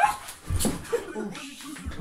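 A heavy thump as a person drops to the floor, then short, wavering high-pitched vocal sounds and a second thump near the end.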